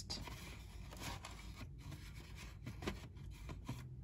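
Faint handling sounds: small cardboard boxes being set against a miniature wooden bench, with a few soft taps and scrapes.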